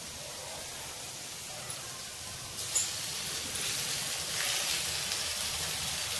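Green peas frying in a pan: a steady sizzle, a little louder from about halfway through, with a couple of brief clicks.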